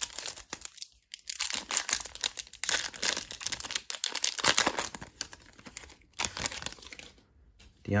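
Foil trading-card pack wrapper being crinkled and torn open by hand: a dense run of sharp crackles and rustles, dying away near the end as the cards come out.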